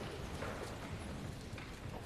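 A crowd of people standing and moving about in a large chamber: a few faint footsteps or knocks over a low rustle and hubbub.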